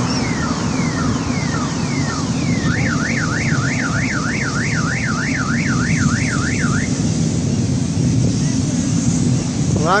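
Car alarm sounding: a run of repeated falling chirps, about two a second, then a fast rising-and-falling warble for about four seconds that stops before the end. A steady low rumble runs underneath.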